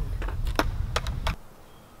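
Handling noise on the camera's microphone: a low rumble with a handful of sharp clicks as the camera is moved about by hand. It cuts off suddenly about a second and a half in.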